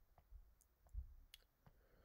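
Near silence with a few faint, scattered clicks and soft low bumps.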